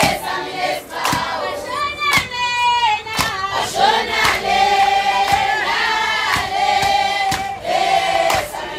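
A group of women singing a traditional Zulu song together in chorus, with long held and sliding notes. Sharp percussive beats come roughly once a second.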